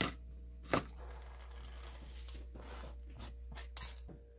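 Crushed peanuts tipped off a plastic cutting board into a stainless steel bowl: a couple of sharp knocks in the first second, then faint rustling with a few scattered clicks and one more sharp click near the end.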